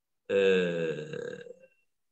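A man's voice holding one long, drawn-out 'uhh' for about a second, slowly dropping in pitch and trailing off: a hesitation sound between phrases, heard over a video-call connection.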